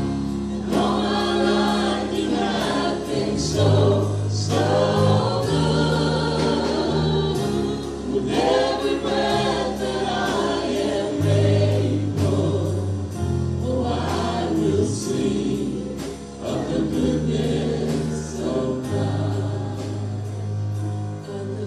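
Gospel-style worship music: a group of voices singing over sustained bass notes and a steady beat.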